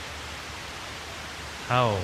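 Steady hiss of the recording's background noise in a pause between a man's slow spoken phrases; his voice comes back near the end.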